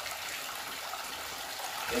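Steady rush of water running through a mini high banker gold sluice and splashing down into its tub.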